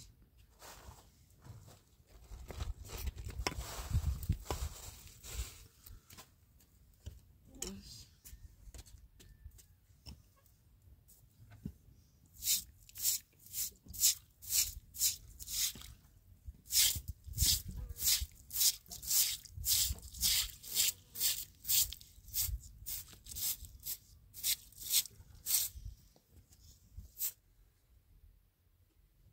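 Straw hand broom scrubbing a wet stone surface in rapid back-and-forth strokes, about two a second, from about twelve seconds in until shortly before the end. A few seconds in there is a shorter stretch of rustling noise.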